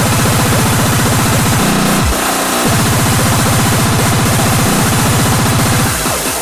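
Hardcore electronic music (speedcore/J-core): a very fast, unbroken stream of distorted kick drums. About a second and a half in, the kicks break off for about a second with a falling sweep, then come back.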